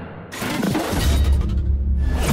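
Intro music sting with sound effects: a shattering crash about a third of a second in, followed by a deep low rumble under the music.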